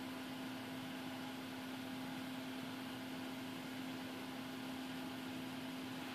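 Faint, steady room tone: an even hiss with a constant low hum underneath, and no distinct event.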